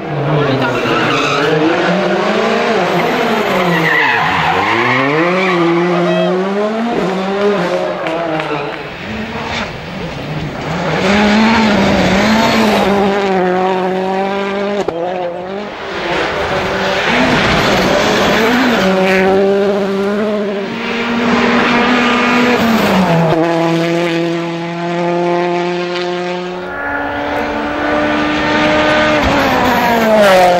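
Rally cars driven flat out, their engines revving hard. The engine note climbs and drops repeatedly with gear changes, and in places holds steady at high revs.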